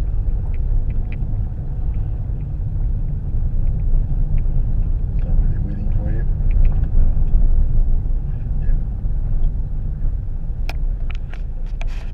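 Car cabin rumble of a car moving slowly: steady low engine and road noise heard from inside. A few sharp clicks come near the end.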